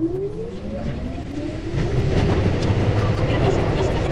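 Keihan 8000-series electric train's traction motors whining upward in pitch as it pulls away from a station, with the running rumble growing louder about two seconds in.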